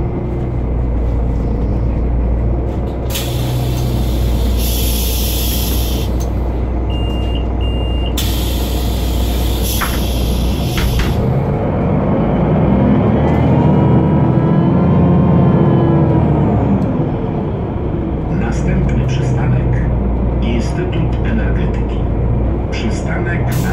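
Inside a Solaris Urbino 12 III city bus at a stop: the DAF diesel rumbling at idle while the pneumatic doors hiss open, a short pair of door warning beeps sounds, and the doors hiss shut with a clunk. The bus then pulls away, a whine rising and falling as the DAF engine and ZF 6HP-504 automatic gearbox take it up through the gears; the uploader calls the gearbox wrecked.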